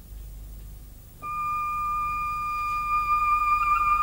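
Background music: after about a second of low hum, a flute comes in and holds one long, steady note.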